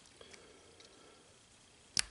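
Quiet handling of small aluminium helicopter rotor-head parts, with a few faint ticks and one short sharp click near the end.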